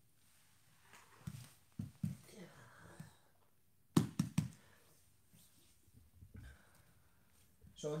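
Grapplers' bodies shifting and thudding on foam training mats, with a few soft thumps early on and one sharper thud about four seconds in.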